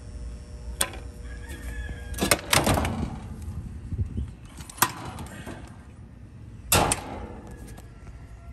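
A few sharp knocks and clacks: one a little under a second in, a longer rattling clatter a little over two seconds in, another near five seconds and a double knock near seven seconds.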